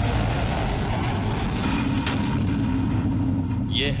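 Steady, loud rushing roar with a low rumble underneath, from a missile's rocket motor during a launch.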